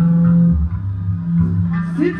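Live maskandi band music with guitar and bass guitar. A held low note gives way about half a second in to shorter, repeated bass notes.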